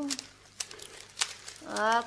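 A man's drawn-out 'ну' trails off, then faint rustling with two sharp clicks, and a voice starts again near the end.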